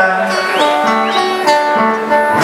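Live Argentine folk music on acoustic guitar and two button accordions, the accordions holding steady chords between the sung lines.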